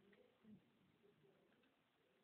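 Near silence: faint room tone, with one brief, faint low sound about half a second in.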